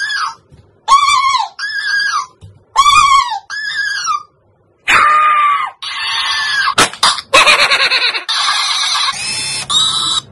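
Squeaky, very high-pitched voice calls from a plush dancing cactus toy repeating what was said: six short calls in pairs over the first four seconds. After a brief gap, music plays.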